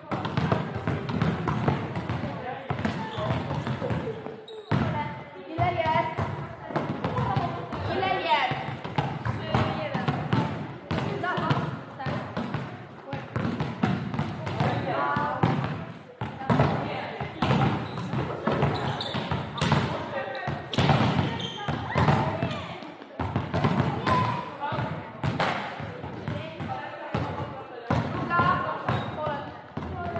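Volleyballs repeatedly struck and bouncing in many short thuds, mixed with several players' voices calling and chattering in a large sports hall.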